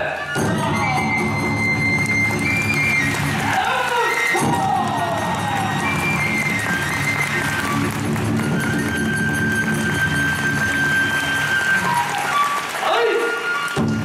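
Kagura accompaniment music: a bamboo flute playing long held and sliding notes over a steady low accompaniment, with a voice-like gliding line twice.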